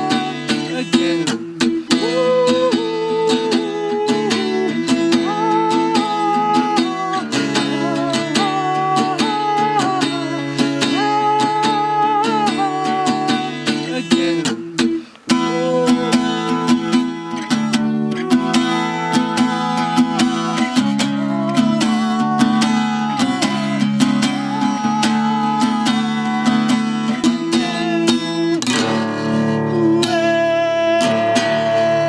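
Acoustic guitar strummed steadily through a song, with a man singing a high wavering melody over it. The playing breaks off for a moment about halfway through, then carries on.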